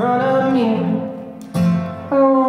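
Live acoustic song: a male voice sings a line that bends in pitch and fades over the first second, backed by an acoustic guitar. About a second and a half in, a fresh guitar strum rings out.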